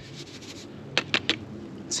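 Fine dry gold concentrate sliding off a paper plate into a plastic gold pan: a soft, faint scraping hiss, with three light taps about a second in.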